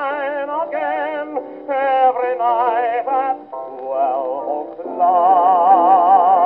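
A 1920s dance-orchestra waltz played from a 78 rpm shellac record on a 1926 Victor Credenza Orthophonic Victrola. The melody is held with a wide vibrato, and the sound has no deep bass and little treble, with short pauses between phrases.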